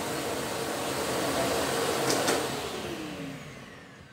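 Philips PowerCyclone 4 XB2140 bagless canister vacuum cleaner with an 850 W motor, running at its high suction setting. About two seconds in there is a click, and the motor winds down with a falling whine as it is switched off.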